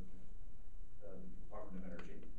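A man's voice speaking through a short pause: about a second with only a steady low hum, then speech resuming partway through.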